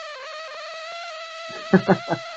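A steady, high buzzing whine with overtones coming through a guest's audio on a live video call: interference that sounds like a mosquito, an audio fault on the guest's line that the host hopes headphones would cure. A voice cuts in over it near the end.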